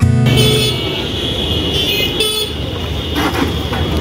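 Busy street traffic noise with a vehicle horn honking, held for about two seconds, then sounding briefly once more.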